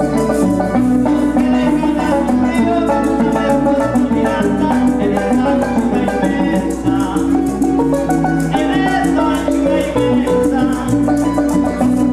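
Llanero folk music played on harp and plucked strings, with maracas shaking a quick, steady rhythm.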